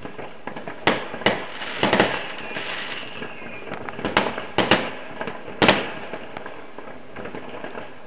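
Fireworks going off: a series of sharp bangs, about six within the first six seconds, with crackling between them, growing quieter near the end.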